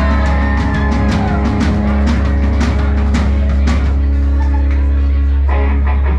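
Live country band playing a fast number at full volume: electric guitar, fiddle, bass and drums, with busy drum and strum hits over a heavy bass.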